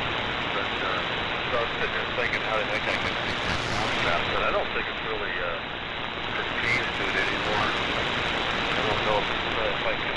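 Shortwave receiver audio on the 75-metre AM band: steady heavy static and band noise, with a weak, barely readable voice transmission underneath it.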